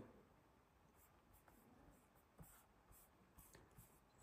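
Near silence: room tone with a few faint ticks spaced about a second apart.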